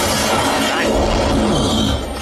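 Film soundtrack: glass shattering and debris crashing in a dense, loud rush that stops abruptly at the end, with music underneath.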